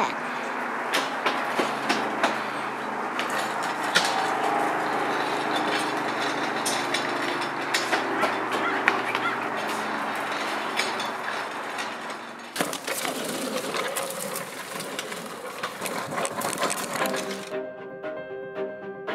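Children's bicycles, one with training wheels, rolling and rattling over pavement and fallen leaves, with many small clicks and knocks. The sound changes about twelve seconds in, and music starts near the end.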